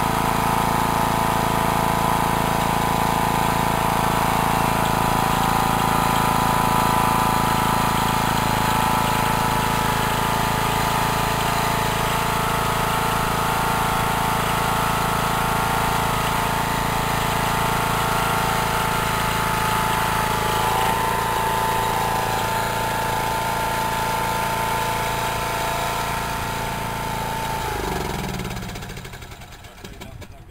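Small Briggs & Stratton engine on a remote-control tracked mower, running steadily as the machine climbs the ramps. Near the end it is shut off and spins down to a stop.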